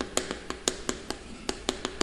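Chalk writing on a chalkboard: a quick, irregular series of sharp taps and clicks, about six a second, as each stroke of the characters strikes the board.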